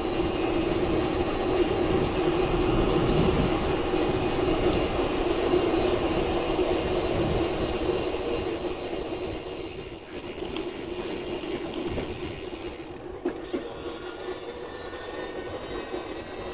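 Electric bike's drive motor whining at a steady pitch while riding, over wind rumbling on the microphone. The whine and wind drop a little about halfway through.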